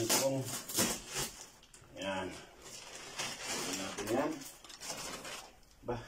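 Plastic packing wrap crinkling and rustling as it is handled and pulled off the chair cushions, in short bursts, with a man's voice making brief sounds about three times.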